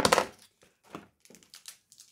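Small wrapped hard sour candies being handled and picked through: a sharp knock at the start, then a run of small scattered clicks and crackles.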